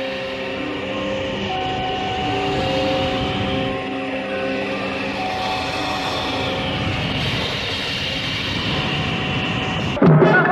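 Electroacoustic tape music: a dense, steady wash of noise with several held tones at different pitches coming and going over it, and a faint high sweep that rises and falls about two-thirds of the way through.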